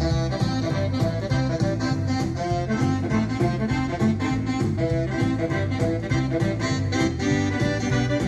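Yamaha Genos 2 arranger keyboard playing an auto-accompaniment style with drums and a bass line at a steady tempo, with a right-hand melody voice played over it.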